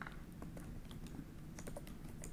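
Faint computer keyboard typing: a quick run of light key clicks as a word is typed.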